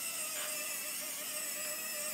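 Small electric linear actuator running with a steady whir as it unfolds the model's hinged wing panels flat.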